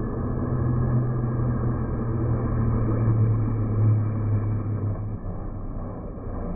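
Formula 1 car's 1.6-litre turbocharged V6 engine passing, a steady low note that drifts down in pitch, swells and then fades away about five seconds in.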